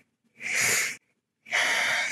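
A woman breathing audibly into a close microphone: one breath about half a second long, a short silence, then a second breath near the end that leads straight into speech.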